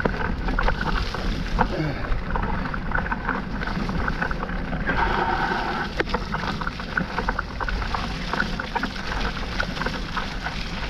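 Mountain bike ridden fast over a muddy dirt singletrack: steady tyre rumble on the wet ground with continual rattling and clicking from the bike and chain, and wind rumble on the microphone.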